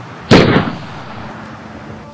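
A single gunshot from a rifle: one sharp, loud crack about a third of a second in that dies away within half a second.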